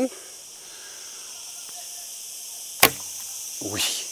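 A single sharp crack about three seconds in, as an arrow is shot from a Mongolian Yuan-style laminated horsebow, over a steady faint outdoor hiss.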